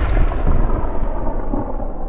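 Low rumble of an explosion sound effect dying away after the blast, its high end fading out within the first second.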